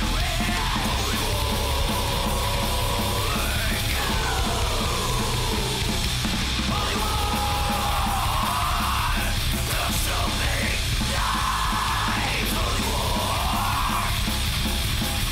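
Hardcore crust punk recording: loud, dense distorted band music with harsh yelled vocals that come in stretches, breaking off for a few seconds at a time.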